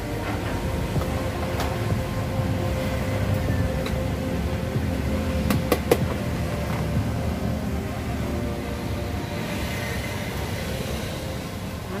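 Steady low background rumble with faint steady tones, broken by two sharp clicks a little past the middle.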